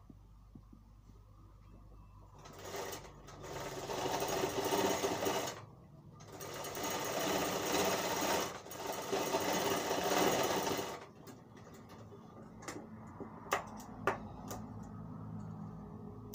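Sewing machine stitching a seam that joins a kurta panel, running in two spells: starting about two and a half seconds in, stopping briefly near the middle, and stopping again about eleven seconds in. A few sharp clicks follow near the end.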